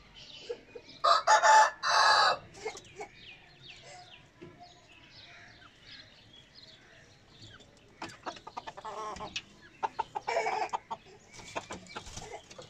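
Bantam rooster crowing once, a short two-part crow about a second in, the loudest sound here. Bantam hens cluck softly around it, with a louder cluck a little before the end.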